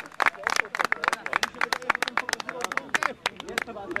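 Scattered hand clapping from a small group of spectators applauding a goal, irregular and several claps a second, with faint voices behind it.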